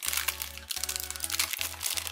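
Foil booster-pack wrapper crinkling in the hands as it is handled, over background music with steady low notes.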